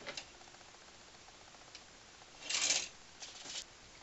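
Clothes and hangers being handled: a small click, then a short rustling clatter past halfway, the loudest sound, and a fainter one near the end.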